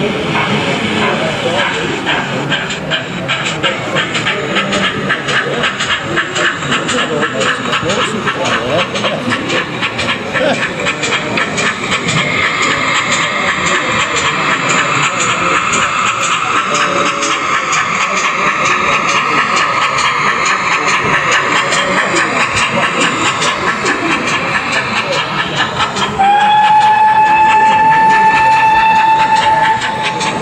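Model pannier tank steam locomotive running with sound: a rapid, steady chuffing, then a long steady whistle blown for about four seconds near the end.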